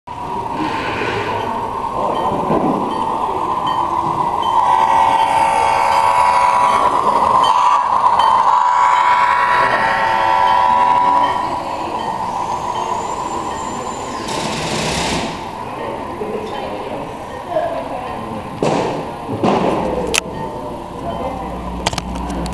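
HO-scale model train running along a layout's track under digital (DCC) control, mixed with people's voices in the room. The sound is loudest in the middle stretch, with a few sharp knocks near the end.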